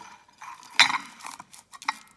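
A large steel chain sprocket being handled and shifted on a hard surface: a sharp metal clank about a second in, a smaller clink near the end, and lighter clicks and rustling in between.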